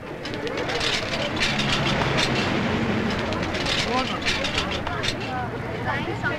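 Busy city-street ambience: motor traffic running steadily, mixed with the chatter of many voices.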